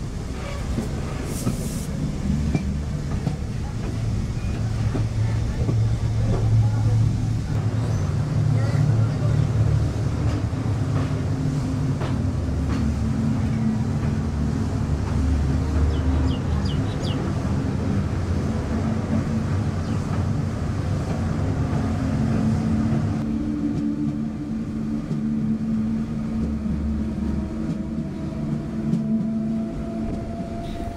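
Passenger train running at speed, a steady low rumble of wheels on rails with a hum from the running gear, heard from the open doorway.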